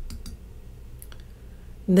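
A few faint, sharp clicks over a low steady hum, then a woman's voice starts right at the end.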